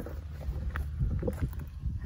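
Wind rumbling on the microphone, uneven and low, with a few faint clicks.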